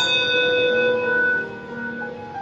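A brass handbell struck once, rung in remembrance after a name is read. It rings with several clear high tones that fade, dropping off after about a second and a half, over soft piano music.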